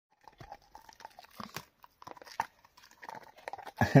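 Dog gnawing on a bone held in a hand: teeth crunching and clicking on it in quick, irregular strokes.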